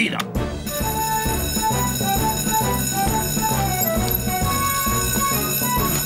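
Fire-station alarm bell, set off by a push button, ringing steadily from about half a second in, over background music with a stepping melody and a beat.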